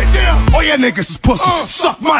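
Hip hop track with rapping over a heavy bass beat; about a third of the way in the bass drops out, leaving the rapped vocal over a thinner backing.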